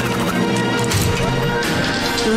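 Cartoon metal crash and clank sound effects as a cage-release lever is yanked and cell doors spring open, over background music.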